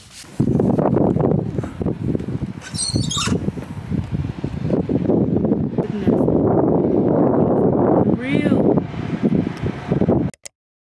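Gusty wind buffeting a phone microphone outdoors, starting suddenly about half a second in, with a bird chirping briefly near the end.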